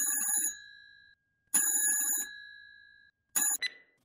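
Telephone ringing: two full rings, each fading out, then a third ring cut short as the call is answered.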